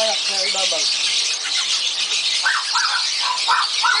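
Caged birds chattering continuously, with a quick run of short high squeaks about two and a half seconds in. A brief voice-like sound is heard right at the start.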